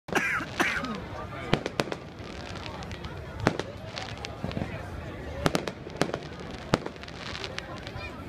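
Aerial fireworks bursting overhead: a string of sharp bangs at uneven intervals, about nine in all, with crackling between them.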